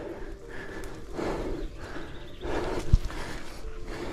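Heavy, laboured breathing of an exhausted runner on a steep climb: a few long, noisy breaths about a second apart, with a short knock just before three seconds in.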